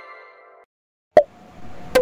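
The fading tail of a chiming correct-answer sound effect, which dies away a little over half a second in. About a second in comes a single sharp pop, followed by a faint hiss.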